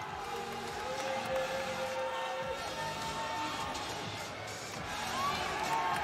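Background music with a few long held notes, over a general hum of arena crowd noise.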